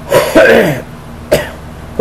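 A man clearing his throat: one longer rasping clear, then a short second one about a second later.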